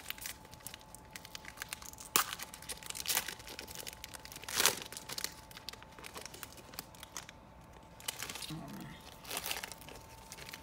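A trading-card pack wrapper being crinkled and torn open, a run of irregular sharp crackles with the loudest about halfway through.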